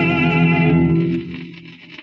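A tenor's final held note with vibrato over an orchestral chord, played from a 78 rpm shellac record. The voice stops under a second in and the orchestra's chord dies away just after. What is left is the record's faint surface hiss with a few crackles.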